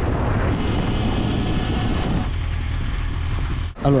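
Yamaha Fazer 800 motorcycle ridden at speed: steady wind rush buffeting the onboard camera's microphone, with a deep rumble of engine and road noise underneath. The higher part of the rush eases about two seconds in, and it cuts off just before the end.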